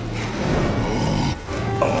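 A film monster's low growl over background film music, breaking off about a second and a half in.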